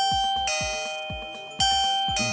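Video Doorbell M10 chime sounding as its call button is pressed: a two-note ding-dong, a high note then a lower one, ringing out, starting over about a second and a half in.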